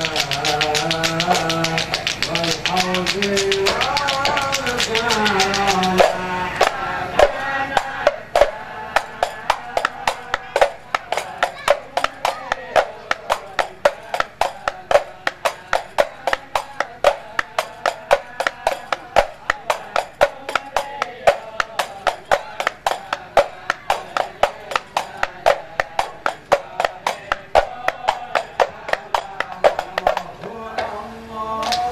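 A group of men singing sholawat to the beat of rebana frame drums and hand clapping. About six seconds in the singing drops away and the drums and claps carry on alone in a steady rhythm, two or three strikes a second.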